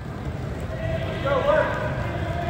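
Many soccer balls being dribbled on artificial turf by a group of players, with quick touches and footsteps overlapping, and a brief raised voice about a second and a half in.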